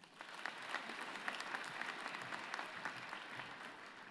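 Audience applauding: a dense patter of many hands clapping that swells just after the start and fades toward the end.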